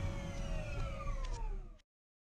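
Helicopter turbine whine gliding steadily down in pitch over a low rotor rumble, as the engine winds down; it cuts off suddenly near the end.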